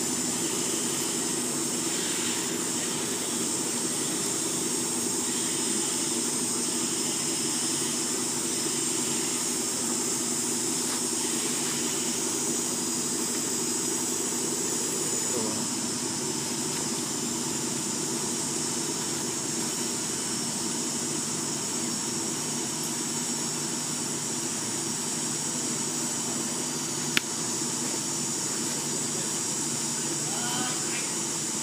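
A steady low drone with a constant high-pitched hiss over it, unchanging throughout, and one sharp click about 27 seconds in.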